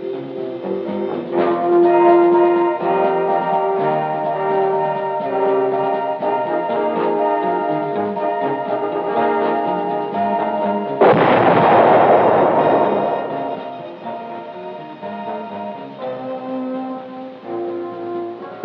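Film-score music with held chords. About eleven seconds in, a single explosion blast cuts in and dies away over a couple of seconds: a plastic demolition charge detonating.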